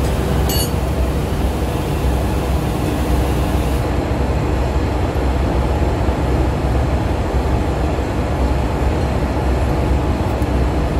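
Steady, loud drone of running engine-room machinery, with a single sharp metal clink of a spanner on a fitting about half a second in.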